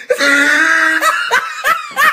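A person laughing: a drawn-out high laugh for about a second, then a few short bursts of laughter.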